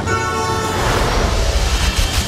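A semi-truck's air horn blares for under a second, its pitch sagging slightly, then gives way to a loud rushing rumble of heavy trucks passing close by.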